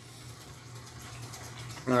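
Faint steady background hiss with a low hum, and no distinct sound event. A man's voice starts near the end.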